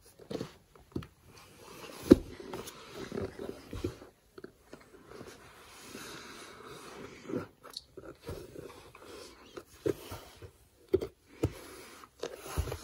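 Soft, irregular thumps and rustling from a baby crawling across a foam play mat, the loudest thump about two seconds in.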